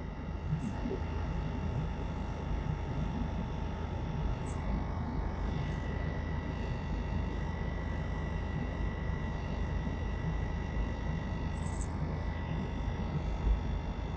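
Steady low rumble of a car moving slowly, with a few brief high chirps over it and a thin steady whine that comes in about halfway through.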